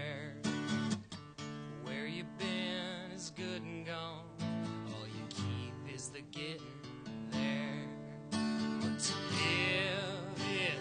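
Acoustic guitar strummed and picked as song accompaniment, with chords changing every second or so. A wavering, held melody line sounds over it at times.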